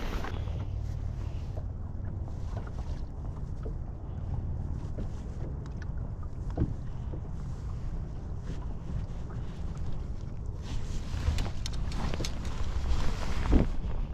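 Wind on the microphone and small waves slapping against the side of a fishing boat, a steady low rumble. It grows louder over the last few seconds, and a single sharp click comes just before the end.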